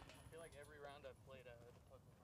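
Near silence with faint, distant talking voices.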